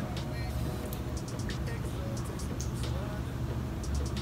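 A steady low rumble with faint music over it, and a scatter of small, light clicks from a lip-gloss tube and applicator wand being handled.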